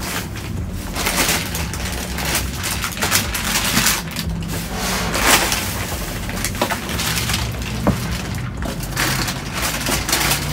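Plastic produce bags and cardboard boxes rustling and crinkling as they are rummaged through by hand, in irregular bursts of crackling.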